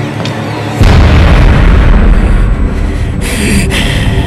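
Horror film soundtrack: a deep boom hits about a second in and carries on as a loud low rumble under dramatic music. Near the end come several short hissing crashes in quick succession.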